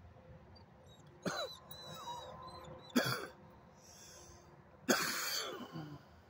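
A person coughing hard three times, a little under two seconds apart, the last a longer cough, after inhaling from a vape pen.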